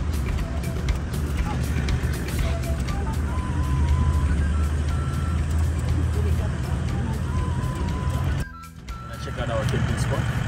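A steady low rumble from a vehicle driving on a gravel road, heard inside the cab, with background music playing over it. The rumble cuts off suddenly about eight and a half seconds in, and a man's voice follows.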